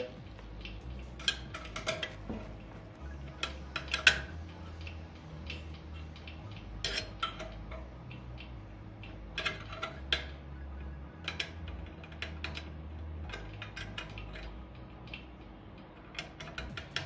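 Small steel wrench clinking and ticking against the nuts and sheet-steel body of a Harman pellet-stove burn pot: scattered metallic clicks, a few at a time, as the nuts are snugged down but not yet fully tightened.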